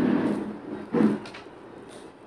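Wire whisk stirring a thick chocolate mixture in a steel pan, scraping against the metal. There is a second, shorter stroke about a second in, then it goes quieter.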